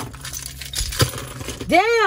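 A few light clicks and clinks, then near the end a woman's loud drawn-out exclamation that rises and then falls in pitch, inside a car.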